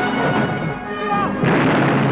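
A film sound-effect explosion, a loud blast starting about a second and a half in, over steady action-trailer music.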